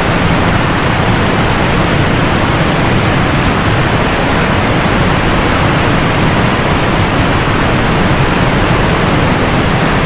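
Rushing water of a waterfall: a steady, unbroken rush.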